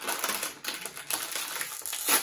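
Crinkly plastic snack bag crackling as it is handled and pulled open by hand.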